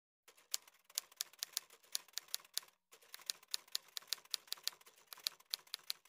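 Typewriter keys clacking in a quick run of keystrokes, about five a second, with a brief pause just under three seconds in, as for a new line.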